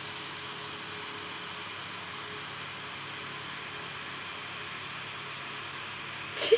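Steady hiss with a faint low hum throughout, with no distinct events.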